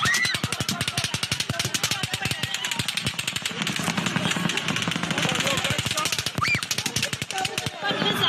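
Sustained rapid automatic gunfire, about ten shots a second, in long unbroken strings that stop shortly before the end. The hosts take it for two different guns firing at once.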